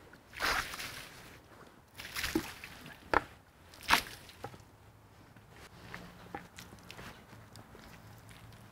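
Water thrown from a bucket splashing onto freshly sawn live-edge walnut slabs, about four separate splashes in the first four seconds.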